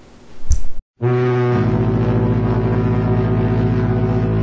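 A short low thump from the camera being handled, then, after a cut, a long deep ship's horn blast that starts about a second in, holds steady and starts fading out near the end.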